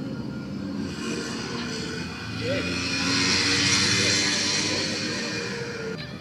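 Road traffic: a vehicle passing, its noise swelling to a peak about three to four seconds in and then fading.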